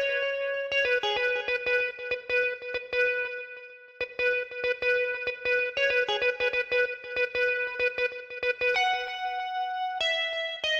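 A synthesized bell patch playing a plucky, guitar-like melody from an FL Studio piano roll. It runs in quick repeated notes around one pitch with short phrases that step up and down. The notes die away briefly a little after three seconds, then resume, and a higher note is held near the end.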